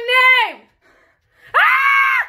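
High-pitched, wordless screams of fright at a cricket: one scream trailing off about half a second in, a short silence, then another loud scream starting near the end.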